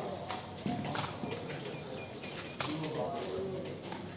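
Sepak takraw ball being kicked: a few sharp, separate knocks as it is struck, with people's voices in the background.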